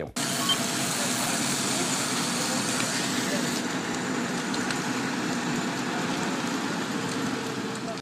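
Eyewitness phone recording at a large building fire: a steady rushing noise from the blaze, with onlookers' voices underneath.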